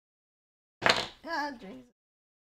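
A man's loud exclamation of "Ah", starting abruptly with a sharp, breathy burst about a second in.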